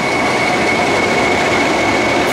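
English Electric Class 20 diesel locomotive running loudly as it draws slowly along the platform, its eight-cylinder diesel engine giving a steady high whine over the rumble.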